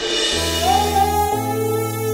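Background score music: held bass notes that change about once a second under a sustained melody line carried by a singing voice, which slides up to a long held note about half a second in.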